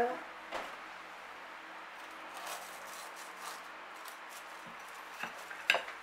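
A knife cutting through the crisp breadcrumb crust of a fried tuna patty: a faint crunching, with a sharper click near the end as the blade meets the plate or board.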